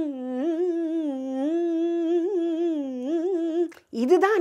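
A woman humming a slow melodic line, mostly long held notes with small turns and dips, which stops shortly before the end.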